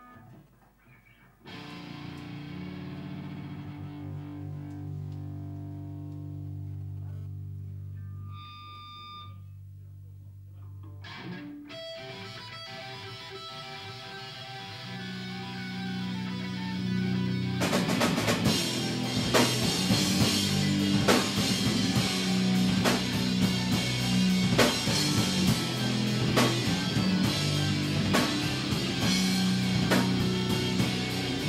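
Live rock band with electric guitars, bass and drum kit starting a song: low guitar and bass chords ring out and are held, a busier guitar line builds from about twelve seconds in, then the drums and full band come in loud a little over halfway through.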